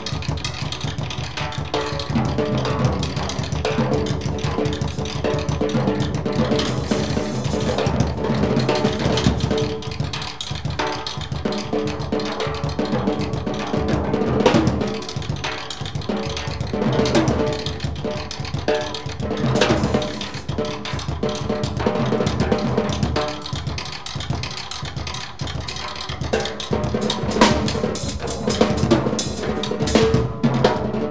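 Free-improvised jazz drum solo on a conventional drum kit played with sticks: dense, fast strokes and rolls across the snare, toms and bass drum, with the drum heads ringing. Cymbal strokes cut through at several points, most thickly near the end.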